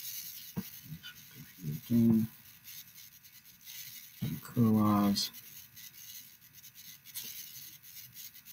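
A man's voice making two brief wordless hesitation sounds, about two seconds in and again near the middle, with a few faint clicks and quiet room tone in between.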